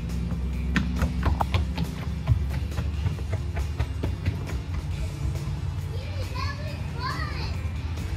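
Footsteps and knocks on a wooden plank deck, a scatter of sharp taps over the first few seconds, over a steady low drone. Near the end a small child calls out briefly in a high voice.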